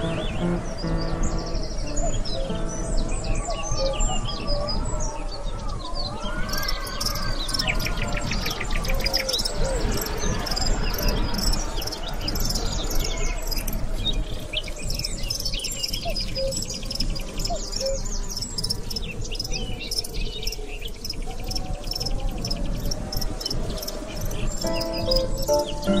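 Birds chirping and trilling, with many short calls and quick repeated trill notes, over soft background music.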